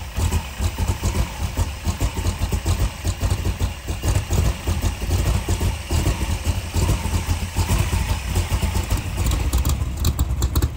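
Backdraft Cobra's 427 cubic-inch stroker V8 crate engine idling, a low rumble that pulses quickly and unevenly.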